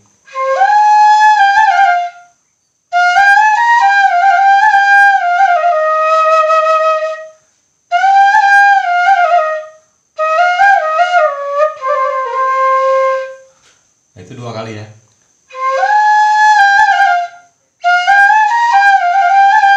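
Bamboo suling pitched in A# playing a slow dangdut melody in five short phrases separated by brief pauses, with notes sliding into one another. A brief spoken word comes between the fourth and fifth phrases.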